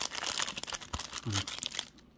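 Paper wrapping around an action figure crinkling and rustling as fingers unfold and peel it open: a dense run of crackles that dies away shortly before the end.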